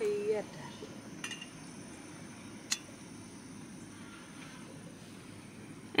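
Campingaz cartridge camping stove burning with a low, steady rush, and a couple of brief light metal clicks as a small kettle is set on the burner.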